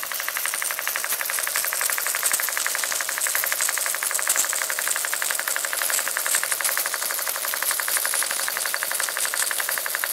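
Clevedon model steam engine running at a steady speed, its exhaust beating fast and evenly, many beats a second, over a steady hiss. The engine is leaking at the piston rod.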